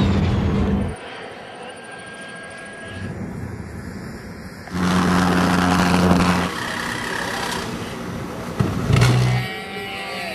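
Jet engines on hobby-built jet vehicles running with a loud, steady low drone, heard as a string of short clips that cut abruptly from one to the next. The loudest stretches come at the start, from about five to six and a half seconds in, and briefly near nine seconds.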